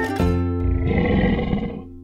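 A short intro jingle ends on a held chord, and a growling roar, like an animal roar sound effect, swells over it for about a second and then fades out.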